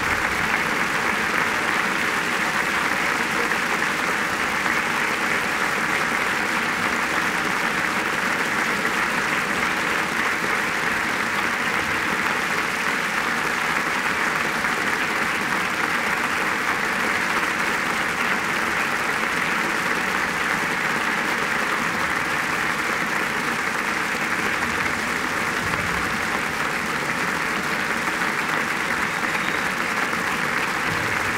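Large congregation applauding steadily, a long unbroken ovation.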